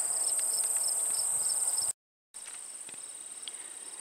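Crickets and other grassland insects trilling steadily: a continuous high trill with a quicker pulsed chirping just beneath it. It cuts out briefly about two seconds in, then carries on more faintly.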